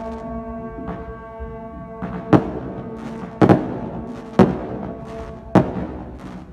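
A procession brass band holds long sustained notes while fireworks bang overhead: about five sharp loud bangs from about two seconds in, roughly one a second, two of them close together.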